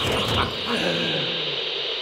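A few low whimpering cries that fall in pitch, over a steady hiss.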